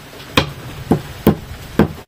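A knife striking a thick round chopping block in sharp, short taps, four strikes about half a second apart.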